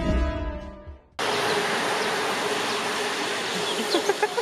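Sustained background music fades out in the first second. Then a steady buzzing hum over a wide noise cuts in suddenly and holds.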